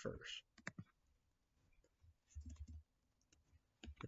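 Near silence with a few faint, scattered clicks and a brief soft low murmur near the middle.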